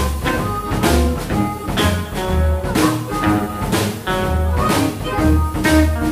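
A blues band playing an instrumental passage: a drum kit keeping a steady beat of about two hits a second under walking upright double bass notes and electric guitars, with sustained harmonica lines on top.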